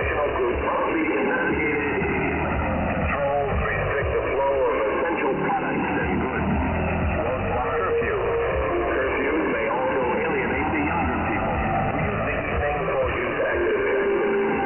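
Shortwave radio received in upper sideband: a weak pirate broadcast's audio under static, crossed by several slow downward-gliding tones.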